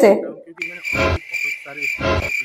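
A steady high-pitched tone starting about half a second in, with two short low thumps, one about a second in and one at the end.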